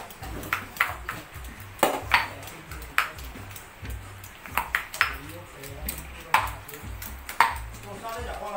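Irregular sharp clinks of metal kitchenware, each with a short ring, about ten over eight seconds, over background music with a low pulsing beat.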